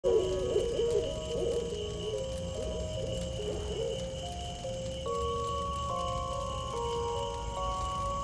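Night soundscape for an animated film: an owl hooting in wavering calls for the first few seconds, over a steady high drone and low rumble. About halfway through, soft music of slow, held notes stepping up and down takes over.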